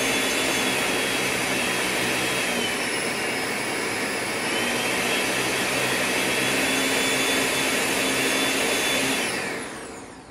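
Countertop blender running steadily, blending a lime mixture, its motor pitch sagging briefly near the middle. It winds down as it is switched off near the end.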